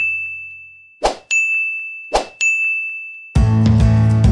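Sound effects of an animated subscribe-button graphic: a ding rings out and fades, then two more quick swoosh-and-ding pairs follow about a second apart as buttons pop onto the screen, each ding a single high tone that dies away. Music starts near the end.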